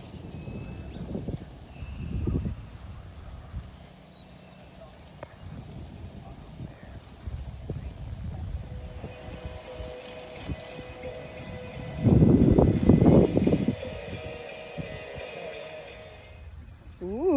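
A sand wedge blasting through bunker sand on a greenside bunker shot: one sharp thump right at the start. After it, a low rumbling noise runs on, with a loud burst about twelve seconds in, and a faint steady tone comes in over the second half.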